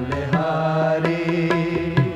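Sikh shabad kirtan music in a passage between sung lines: sustained melodic tones over a low drone, with tabla strokes falling at a regular beat.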